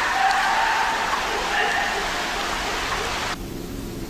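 A loud, steady rushing hiss with a faint, drawn-out high cry in it. The hiss cuts off suddenly about three and a half seconds in.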